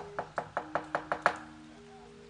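Rapid wooden knocking from a wayang kulit dalang striking the puppet chest with his cempala mallet, about six knocks a second, stopping about a second and a half in. Faint sustained gamelan tones hang underneath.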